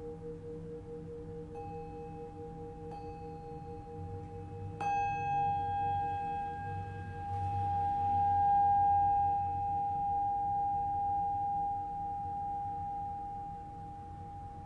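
Brass singing bowls and a hand bell ringing in layers: a low tone pulsing slowly, a new tone struck about a second and a half in, and a sharp strike about five seconds in with bright overtones whose main tone swells and then rings on steadily.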